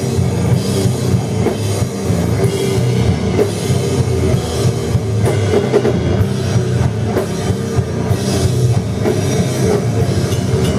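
Sludge metal band playing live, loud: heavily distorted guitars and bass through amplifiers, with a drum kit and cymbals striking over them.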